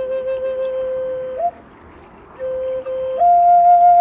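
Woodsounds Native American flute playing a slow melody: a long low note is held, a breath pause comes about a second and a half in, then the note returns and steps up to a higher held note.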